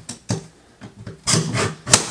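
Metal leg of a Mainstays fold-in-half plastic table being pushed past its release nub and folded in: a few short scraping rubs, then a sharp click near the end as the leg goes all the way.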